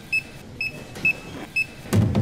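A short, high electronic beep repeating four times, about twice a second, over steady outdoor background noise, with a louder knock right at the end.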